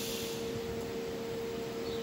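A steady, single-pitched background hum with light hiss underneath, holding one even tone throughout without rising or fading.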